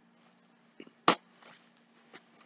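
Faint rustling of a plastic shopping bag being rummaged through, with one short, sharp sound about a second in.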